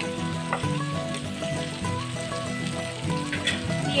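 Potatoes, peas and tomato frying in oil in a kadai, a steady sizzle, under background music of held instrumental notes.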